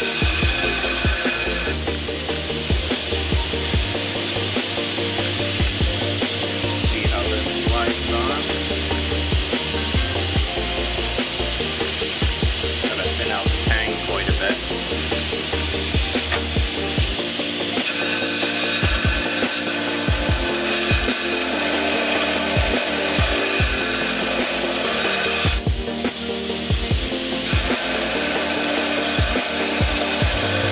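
Belt grinder running while a steel knife blade is ground against the belt, taking the shelf down so the guard will fit, with background music over it.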